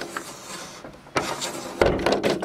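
Plastic motorhome rooflight being moved by its handle, the frame scraping and rubbing, with a louder scrape about a second in and a thump near the end.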